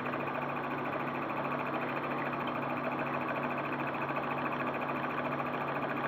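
Homemade magnet pulse motor running steadily: the heavy magnet-fitted disc spins between two coils whose contact breakers switch them rapidly, giving an even hum with a fast, fine chatter.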